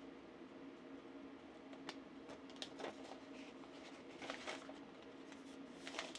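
Faint rustling and a few soft ticks of a paper masking sheet being wrapped by hand around a glass mug, over a low steady hum.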